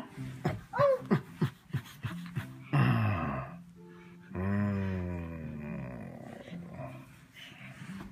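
Wordless voice sounds: short rising and falling squeals early on, a rough burst near the middle, then one long, falling drawn-out vocal sound lasting over a second.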